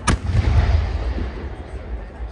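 A firework rocket bursting overhead with one sharp bang just after the start, followed by a low rumbling echo that fades over about a second.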